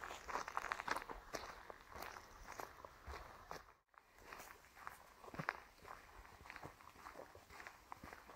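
Footsteps of someone walking on a dirt forest path, a soft irregular series of scuffs and light crunches, with a brief drop-out just before the middle.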